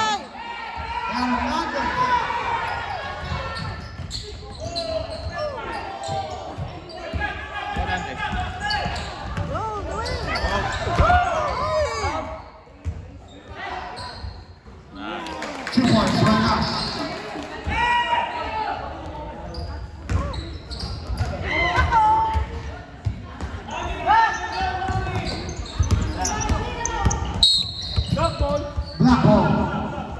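Basketball game sounds in a gym: a ball bouncing on the hardwood court, mixed with players' and spectators' voices.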